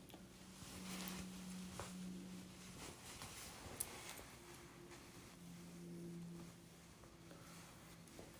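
Very quiet room with faint rustling of fingers being combed through freshly curled hair to break up the curls. A faint low steady hum comes in twice, about a second in and again about five seconds in.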